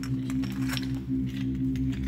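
A steady, low, eerie drone of ambient background music, with a few short clicks over it.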